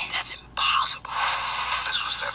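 Movie trailer soundtrack, a voice over music. It sounds thin, with no bass, and drops out briefly twice in the first second.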